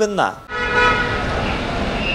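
A vehicle horn sounding in one long honk of about two seconds, starting about half a second in, over traffic noise.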